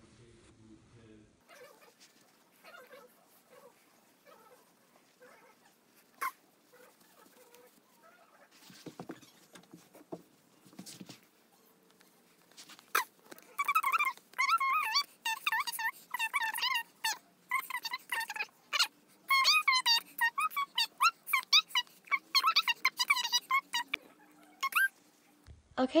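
Sped-up, high-pitched chipmunk-like voice chattering in quick, choppy syllables through the second half. Before it come faint clicks and rustling from handling the sock and stuffing.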